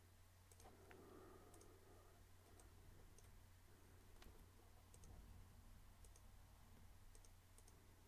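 Near silence with faint computer mouse clicks scattered through it, over a low steady hum.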